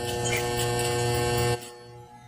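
Electric hair clippers running with a steady buzz that cuts off abruptly about a second and a half in.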